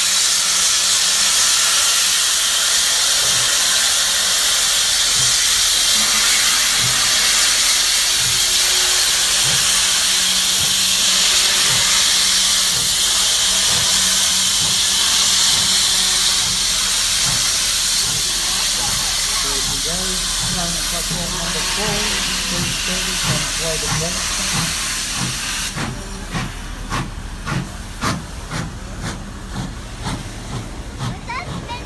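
Steam locomotive 3016 moving off from a standstill, hissing loudly as steam blows from its open cylinder drain cocks, with exhaust beats that come quicker as it gathers way. Near the end the hiss falls away and the exhaust beats stand out sharply, two to three a second.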